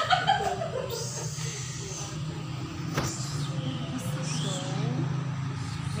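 Indistinct voices of people talking, over a steady low hum.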